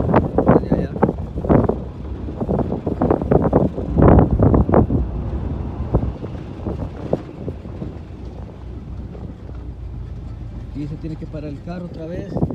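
Wind buffeting a phone's microphone outdoors: a steady low rumble with louder, irregular gusts in the first few seconds that ease off after about five seconds.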